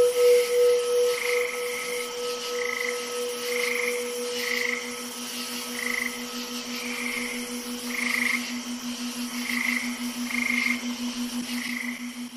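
Night ambience of frogs calling: a fast, steady pulsing low trill with higher calls repeating about once a second, over a ringing bell-like tone that fades away during the first several seconds.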